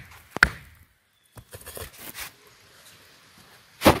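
A rock hammering a hardwood stake used as a wedge into the top of a log round to split it: two sharp knocks, one just under half a second in and one near the end, with a few faint taps between.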